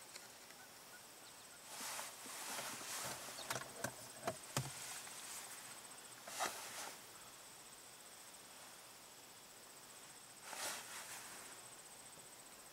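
Faint, steady high-pitched insect trilling. It is broken by a few brief noisy swishes and a cluster of sharp clicks between about three and a half and four and a half seconds in.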